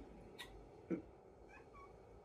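Mostly quiet room with soft sounds of a Bible being handled and its pages turned: a short click, then a soft thump about a second in, and a few faint brief squeaks near the end.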